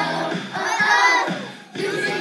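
A group of young children singing and shouting the "oh oh" line of a pop song together over its backing track, loudest about a second in, breaking off briefly near the end before the music comes back in.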